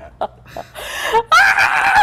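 A woman's loud, high-pitched, wavering laugh, breaking out about halfway through after a short quiet stretch.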